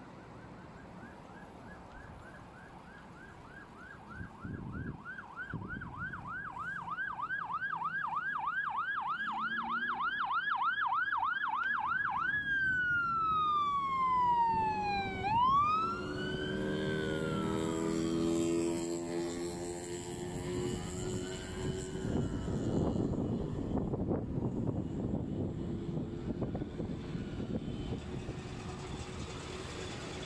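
Electronic emergency-vehicle siren: a fast yelp, about three to four rises and falls a second, for roughly eleven seconds, then switching to a slow wail that falls and rises about twice before fading out. Road traffic noise runs underneath, louder from about four seconds in.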